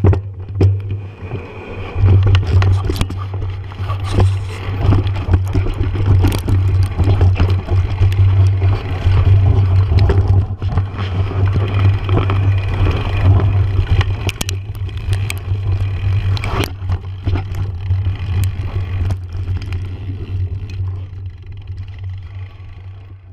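Mountain bikes riding down a dirt trail close to the microphone: a steady low rumble that swells about two seconds in and fades near the end, with many sharp clicks and knocks as they roll over the rough ground.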